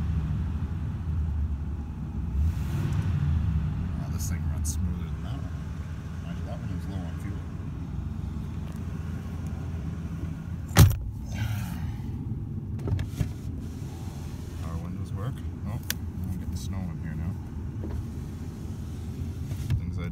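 Oldsmobile 307 V8 idling after a cold start, heard from inside the cabin, a little louder for the first few seconds and then settling into a steady low idle. About eleven seconds in there is a single sharp clunk from the door.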